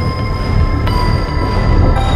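Cinematic logo-reveal sound design: a heavy low rumble under several high held tones, with a new layer of tones coming in about a second in.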